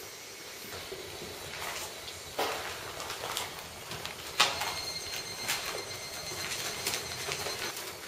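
People moving through a derelict building: shuffling footsteps and handling noise, with a sharp knock about two and a half seconds in and another a little after four seconds. A faint, high, steady squeal runs through the second half.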